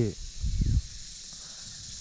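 Insects trilling steadily in a high, even drone in dry tropical scrub, with a short low rumble about half a second in.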